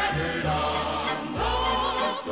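Music: a song sung by female voices over instrumental accompaniment, the voices held in long notes with vibrato.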